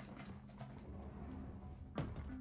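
Faint soundtrack audio from the TV episode playing: a low steady drone with scattered light clicks.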